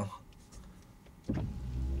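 Car windshield wiper motor humming and the blades sweeping across the wet glass, starting about a second and a half in.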